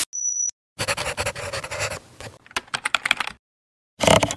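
Sound effects of an animated logo sting: a brief high beep, then a run of rapid scratching strokes that stops about three and a half seconds in.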